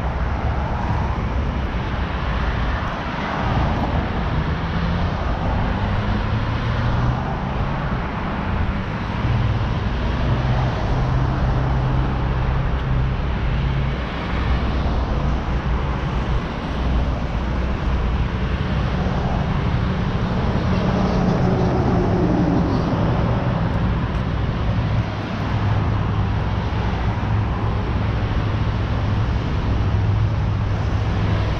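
Road traffic on a multi-lane road: a steady wash of tyre and engine noise, with the hum of passing vehicles swelling and fading.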